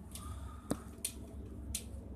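A few faint sharp clicks over a low steady background hum, the clearest about two-thirds of a second in.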